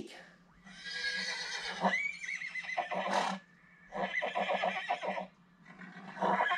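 Horse whinnying twice, each a long, wavering high call, the first one longer; a third begins just at the end.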